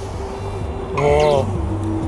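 A short exclaimed voice call about a second in, with background music and a steady low rumble of wind on the microphone underneath.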